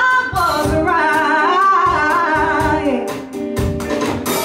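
Woman singing a long, wavering vocal line with vibrato over band music with a steady beat, her voice sliding down in pitch about three seconds in.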